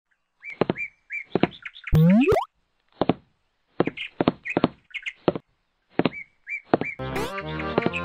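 Cartoon sound effects: a string of short knocks, each with a brief high chirp, and a loud rising whistle-like glide about two seconds in. Bouncy music starts about seven seconds in.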